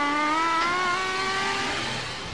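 A child's singing voice holding one long note that drifts up slightly toward the end and trails off.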